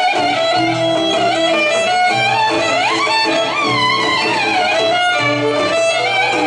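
Live Greek folk dance music: a violin plays a gliding, ornamented melody over a laouto's steady, rhythmically repeated plucked accompaniment.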